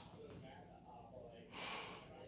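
A chihuahua playing gives one short snort near the end; otherwise faint, with quiet voices in the background.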